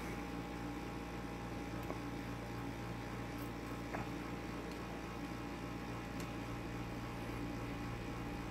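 Steady electrical hum and room noise, with a few faint ticks about two and four seconds in as small resistors are handled on the bench.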